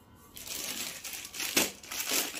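Clear plastic packet around a folded suit crinkling as it is handled and laid down. It starts about a third of a second in and swells louder near the end.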